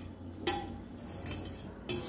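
A metal ladle clinking against a stainless-steel pot, two short clinks about a second and a half apart, the first ringing briefly.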